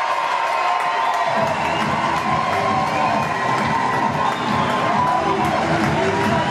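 Crowd cheering and shouting in high voices as a goal is scored, a steady loud din with more body from about a second and a half in.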